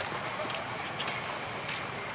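Background noise of a crowded outdoor market: a steady hiss with scattered sharp clicks and taps and a few faint high chirps.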